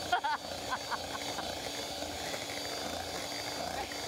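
Electric hand mixer running steadily, its beaters whirring through cake batter in a glass bowl.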